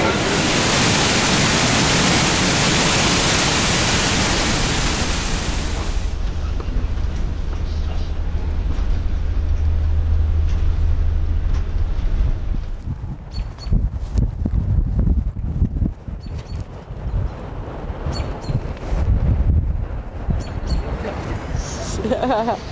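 Roar of Niagara Falls, a loud, dense rush of falling water, for about the first six seconds. Then, after a cut, the low steady hum of a coach bus heard from inside the cabin, giving way to irregular low thumps.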